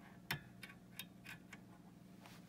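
A series of about six light clicks, roughly three a second and the strongest near the start, from a multimeter probe tip tapping against the metal pins of a power supply board's header connector. A faint steady low hum runs underneath.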